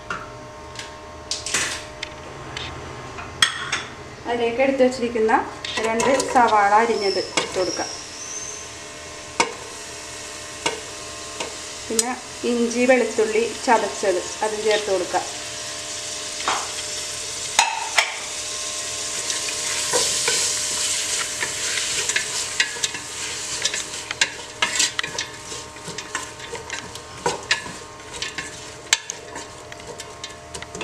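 Sliced onions frying in hot oil in an aluminium pressure cooker, stirred with a wooden spatula. The sizzle swells in the second half, with scattered clicks of the utensils. A wavering voice-like sound comes twice in the first half.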